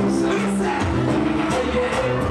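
Live reggae music played loud through a club sound system: bass and drums on a steady beat, with a singer's voice over them.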